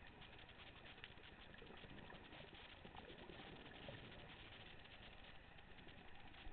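Faint underwater coral-reef crackle from snapping shrimp: a dense patter of tiny clicks, with a few sharper clicks standing out here and there.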